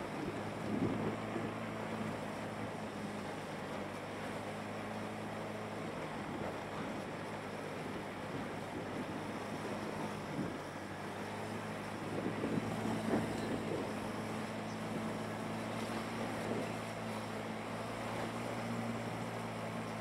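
Small motorbike engine running steadily at cruising speed, with wind rushing over the microphone. It gets slightly louder and rougher for a couple of seconds around the middle.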